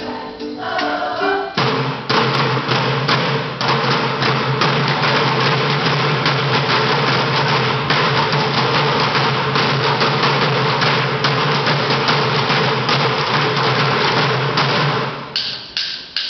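A group of children drumming on upturned plastic buckets with drumsticks: a fast, dense clatter of many hits over a held low note from the backing music. The drumming starts about one and a half seconds in and stops about a second before the end.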